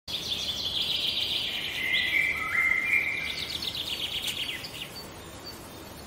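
Channel-logo intro sound: high whistling tones held for a second or so each, stepping down in pitch and back up, then a fluttering trill that fades out, over a steady hiss.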